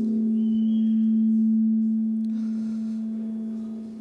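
A single sustained low note held steady, swelling slightly and then slowly fading away. A faint higher tone sounds briefly early on, and there is a small click a little after two seconds.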